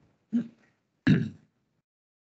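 A person's short murmured "ừ" (Vietnamese "yeah"), then about a second in a brief, louder throat clearing.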